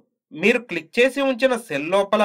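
Only speech: a narrator talking steadily in Telugu.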